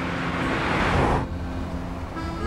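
A car driving past: a rush of tyre and engine noise that swells over the first second and cuts off sharply just over a second in, over background music with held notes.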